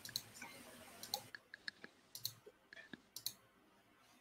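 A faint run of small, scattered clicks, several a second, that stops a little past three seconds in.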